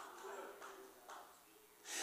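Quiet pause in a man's amplified sermon: faint voices in the room early on, then a breath drawn in near the end just before he speaks again.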